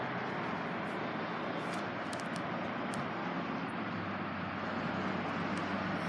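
Steady outdoor background noise with a low traffic-like hum, and a few faint clicks scattered through it.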